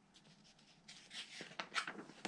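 Pages of a picture book being turned by hand: a quiet start, then faint paper swishes and rustling with a couple of small ticks from about a second in.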